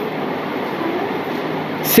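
Steady background noise: an even hiss with a faint low hum, unchanging between spoken phrases.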